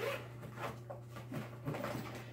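Zipper on a fabric blind bag's side pocket being pulled open, faint and in short strokes.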